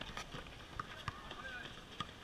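Basketballs bouncing irregularly on an outdoor hard court, with short high squeaks that glide in pitch and faint voices of players.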